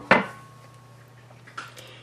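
A metal spatula set down against kitchenware, giving one sharp clack right at the start with a faint ring after it, then only faint handling sounds.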